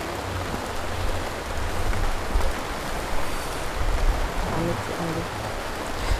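Steady rain falling, an even hiss, with a low rumble underneath. A faint voice murmurs briefly near the end.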